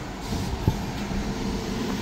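A city bus driving past close by, its engine running with a steady low hum and one short click about two-thirds of a second in.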